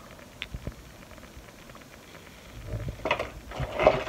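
Strung beads and their cardboard store packaging being handled on a table: a couple of faint clicks, then rustling and clicking in the last second and a half, loudest near the end.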